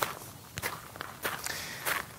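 Footsteps crunching on gravel: a person walking a few paces, each step a short crunch.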